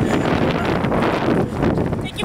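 Wind buffeting the microphone: a loud, steady rushing noise with no clear voices.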